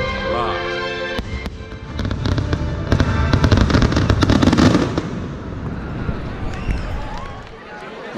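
Fireworks bursting and crackling in rapid strings from about a second in to about five seconds, over the fireworks show's music, which is clearest in the first second. Things quieten for the last few seconds.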